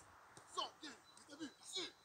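Indistinct voices: short calls and syllables, too unclear to make out as words.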